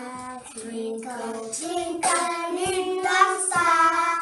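A group of young kindergarten children singing a nursery song together in long held notes.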